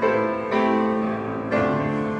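Upright piano playing sustained chords, with a new chord struck at the start, about half a second in, and again about a second and a half in.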